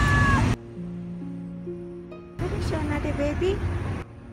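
A cat's meow that rises and then holds, cutting off about half a second in. About two and a half seconds in, a second, wavering lower-pitched call follows. Soft background music plays throughout.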